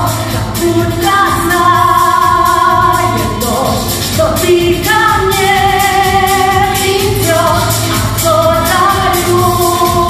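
A woman singing into a handheld microphone, amplified, with long held notes over instrumental accompaniment with a steady beat.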